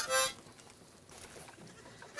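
A fainting goat bleating once, briefly, right at the start.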